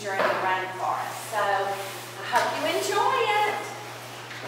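Speech: a voice talking, words not made out, over a steady low hum.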